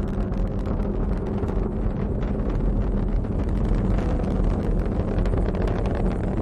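SpaceX Falcon 9 first stage's nine Merlin engines heard from the ground during ascent: a steady deep rumble with a dense crackle.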